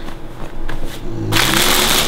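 Clear plastic packaging bag crinkling loudly as it is handled and pulled open. It starts suddenly a little over a second in.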